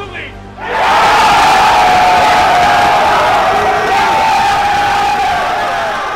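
A group of football players yelling and cheering together. A loud, held shout starts a little under a second in and slowly fades.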